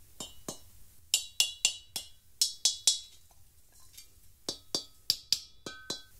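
An old, unmodified camping gas cylinder struck repeatedly with mallets: short, dull metallic knocks with little ring. The strikes come in quick irregular runs, with a sparser stretch a little past the middle.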